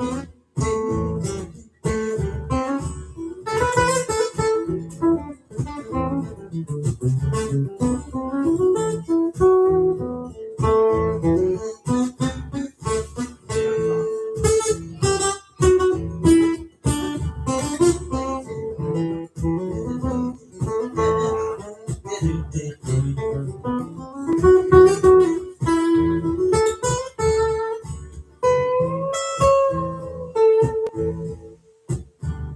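Steel-string acoustic-electric guitar played live through an amplifier, strummed chords mixed with picked notes at a steady pace.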